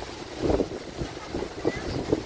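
Wind buffeting the microphone in uneven gusts, the strongest about half a second in, over the hum of an open-air crowd.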